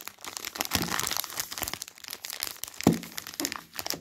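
Crinkling of the wrapper on a bar of Cadbury Dairy Milk Whole Nut chocolate as it is handled, a dense run of crackles with one sharper, louder crackle about three seconds in. The sound cuts off suddenly at the end.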